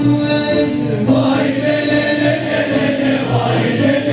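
A Turkish music ensemble's choir singing a melody in long held notes, with instruments accompanying.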